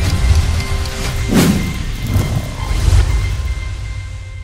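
Intro music with a heavy bass, with a sound effect that sweeps down in pitch about a second and a half in and a fainter downward sweep a second later.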